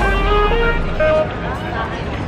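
Background music with held notes that cuts off about a second in, giving way to the ambience of a busy pedestrian shopping street with passers-by talking.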